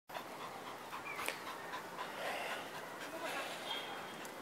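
A small dog panting, with a sharp click just over a second in.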